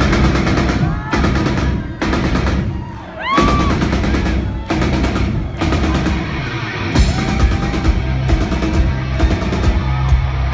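Live rock drum kit playing a song's drum intro over the PA: fast, heavy snare, tom and bass-drum hits that grow sharper about seven seconds in.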